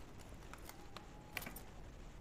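Faint episode soundtrack: soft rustling with a few light clicks, as of armour straps and buckles being undone.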